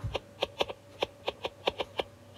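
Stylus tip tapping and ticking on an iPad's glass screen while a word is handwritten: about a dozen light, irregular clicks in two seconds.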